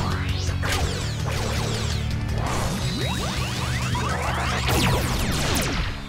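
Action music with layered whooshing and zapping sound effects for a glowing, powered-up sword attack, many sweeping falling tones that are loudest around five seconds in.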